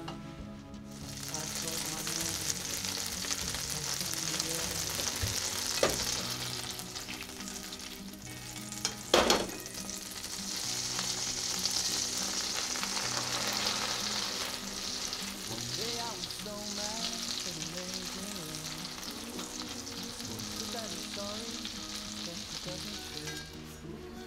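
Butter sizzling and foaming in a hot frying pan, a steady hiss that is fainter in the last several seconds. Two sharp knocks, about six and nine seconds in, the second the loudest.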